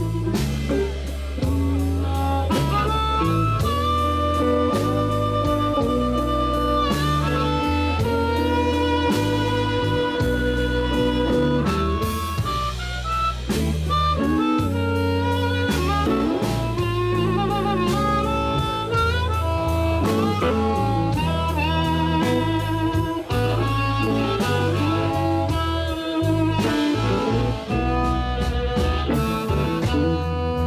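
Live blues band: a harmonica cupped against a handheld microphone plays the lead, with held notes and bent notes, over drums, bass guitar and electric guitar.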